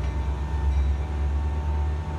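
Metra stainless-steel bilevel commuter cars rolling slowly past, a steady low rumble with a faint steady whine above it.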